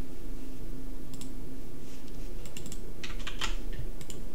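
Keys typed on a computer keyboard in a few short bursts, the densest near the end, over a steady low hum.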